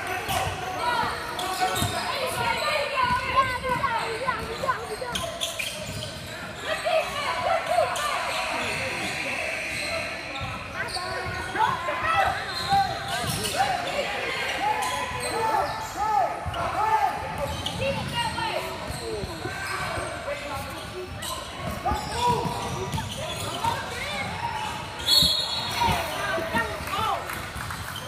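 Basketball game play on a hardwood gym floor: the ball dribbling, sneakers squeaking and players and spectators calling out. A short referee's whistle sounds near the end.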